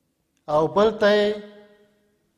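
Speech only: a man speaking one short phrase starting about half a second in, with the last syllable drawn out on a steady pitch.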